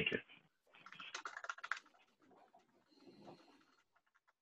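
Typing on a computer keyboard: a faint quick run of keystrokes lasting about a second, with a weaker patch of key sounds near the end.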